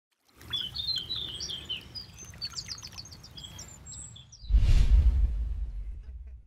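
Small birds singing with many short, high chirps and trills. About four and a half seconds in, a loud rushing whoosh with a deep rumble cuts in over them and slowly fades.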